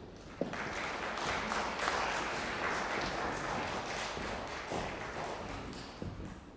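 Audience applauding in a concert hall, starting about half a second in and thinning out toward the end.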